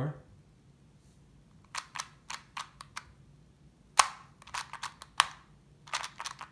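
Rubik's Clock puzzle clicking as its dials are turned and pins pressed during a solve. Short, sharp plastic clicks come in scattered groups, with the loudest single clicks about four and five seconds in.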